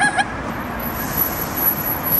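Steady city street traffic noise, with a thin, high steady tone coming in about half a second in.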